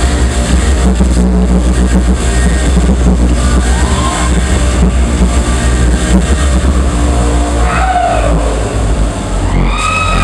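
All-vocal a cappella pop performance through a concert PA: a deep, buzzing vocal bass line and beatboxed beat, with sliding vocal sweeps about four seconds in, about eight seconds in and again near the end.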